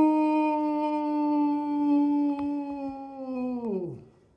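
A man's voice holding one long, howl-like sung note, the drawn-out end of a "ciao", kept at a steady pitch and then sliding down and stopping near the end.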